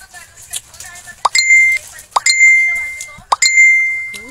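A chime sound effect played three times, about a second apart, starting just over a second in. Each time a quick upward pop leads into a bell-like ring that dies away slowly.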